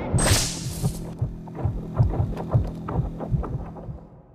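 Film-trailer sound design: a sharp whoosh about a quarter of a second in, over a pulsing low beat of about three thumps a second with faint clicks, fading out near the end.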